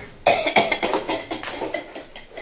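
A man laughing in a run of short, breathy bursts that start about a quarter second in and die away toward the end.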